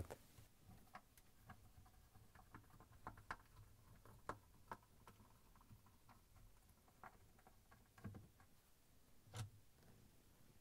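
Faint, scattered clicks and ticks of a Torx screwdriver working screws out of a dishwasher's plastic pump outlet, about ten in all at uneven intervals, over near silence.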